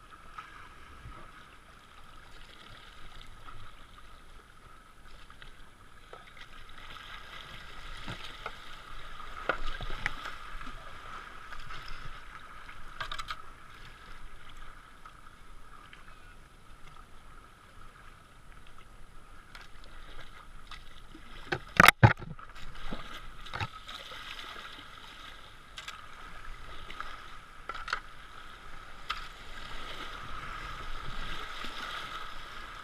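Kayak running down shallow river rapids: steady rushing water with paddle splashes. A sharp double knock about two-thirds of the way through is the loudest sound.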